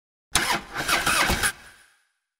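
About a second of loud car engine noise that pulses in level, then cuts off suddenly and leaves a short fading tail.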